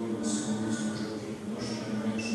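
A man's low voice in a reverberant church, with short hissing s-sounds every few tenths of a second.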